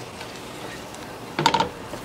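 A spoon stirring tomato sauce in a pan over the heat: a low steady hiss, then a short burst of clicks and clinks of the spoon against the pan about one and a half seconds in.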